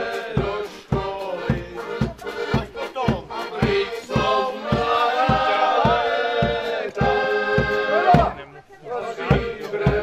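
Street band music: a bass drum beating steadily about three times a second under brass and voices singing, with some long held notes in the middle. The music drops out briefly near the end and then starts again.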